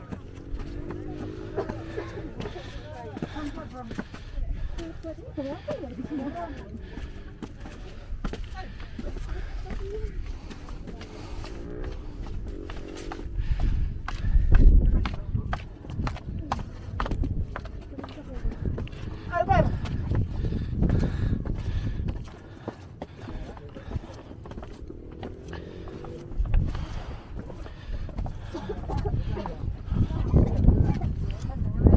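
Indistinct chatter of people on a busy outdoor concrete staircase, with footsteps on the steps. Low rumbling gusts, like wind buffeting the microphone, come and go, loudest a little before the middle and near the end.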